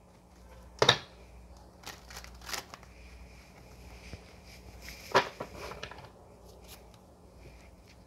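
Tarot cards being gathered and handled on a tabletop: a sharp tap about a second in and another about five seconds in, with soft sliding and rustling of cards between.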